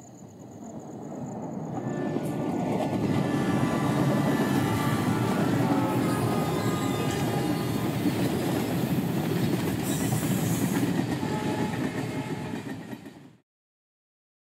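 Passenger train running past close by on the rails, a steady rumble that swells over the first few seconds and then cuts off abruptly near the end.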